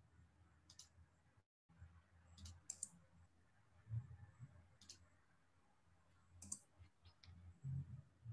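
Near silence with about six faint, sharp computer mouse clicks spread out over a few seconds.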